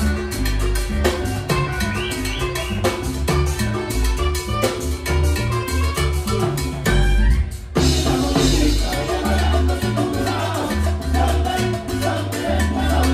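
Live band playing upbeat Latin dance music, with electric guitar, drum kit and hand percussion over a steady bass line. The band stops briefly a little past halfway, then comes back in at full volume.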